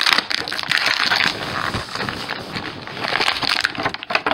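Clear plastic blister packaging of a boxed action figure crackling and crinkling continuously as hands press and flex it to push the figure out of its plastic tray.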